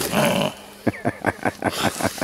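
A man's low, gravelly chuckle: a short voiced sound, then a run of quick breathy pulses about five or six a second.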